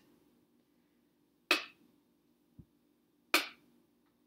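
Two sharp clacks about two seconds apart, with a softer thump between them, from handling at a domestic sewing machine as a small paper-pieced patch is set under the needle.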